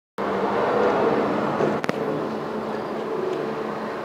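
Steady background noise with a low hum, easing off slightly, and a single sharp click a little under two seconds in.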